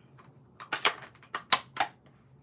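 A handful of short, sharp clicks and taps, about five in the second half, as small craft supplies such as an ink pad are picked up and set down on a work table.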